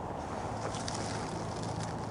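Steady hum of distant highway traffic, with faint crackles of dry leaves underfoot.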